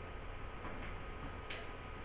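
Quiet room with a steady low hum and a few faint, short, irregular scratches, like pens or pencils drawing on paper.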